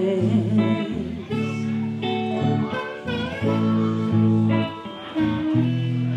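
Blues music: a woman singing over her hollow-body electric guitar, with harmonica held notes and a second guitar.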